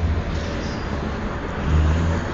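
Steady hiss with a low rumble that swells briefly near the start and again near the end.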